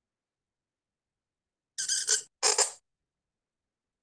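Reed pen (qalam) scratching across paper in two short strokes close together, about two seconds in, as the nib draws a letter.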